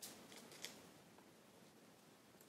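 Faint, crisp crackles of stiff folded origami paper being handled: a few short ticks in the first second, then near silence.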